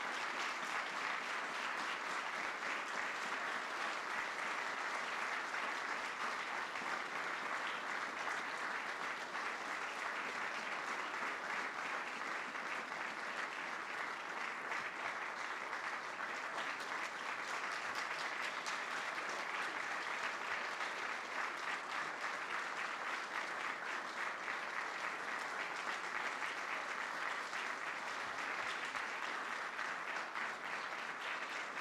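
Audience applauding steadily and without a break, a dense patter of many hands clapping.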